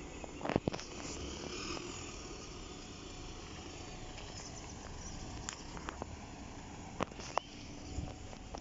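City buses running at low speed as they turn and pull in, a steady engine and road noise, with a few sharp clicks about half a second in and twice near the end.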